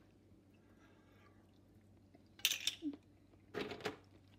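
Hard clam shells clattering against each other as a clam is picked out of a tub of whole clams: two short bursts of clicking in the second half, after near silence.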